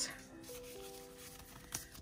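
Soft background music with a few held notes, under faint rustling of a foil Pokémon booster pack being handled, with a brief crinkle near the end.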